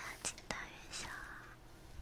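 Soft, breathy whispering close against an ear-shaped binaural ASMR microphone, with a few sharp clicks in the first half-second.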